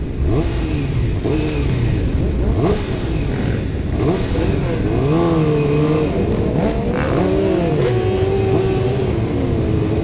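Several sport-bike engines revving and changing gear in a group ride, their pitches rising and falling and overlapping, over the rider's own engine and a steady low wind rumble on the helmet camera.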